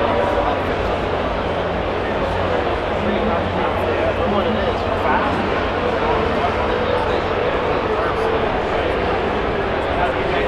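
Crowd chatter: many indistinct voices talking at once in a large, busy exhibition hall, steady throughout with no single clear speaker.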